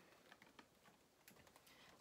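Near silence, with a few faint light taps and clicks of a cardboard soap box and toiletries being handled on a table.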